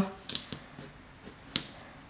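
Faint handling of a paper sticker sheet, with one sharp click about one and a half seconds in.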